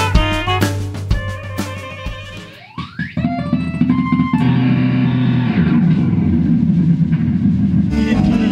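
Jazz-rock fusion instrumental music with tapped string instruments and drums. It thins out about two and a half seconds in under a rising glide, then a new section starts with steady low bass notes.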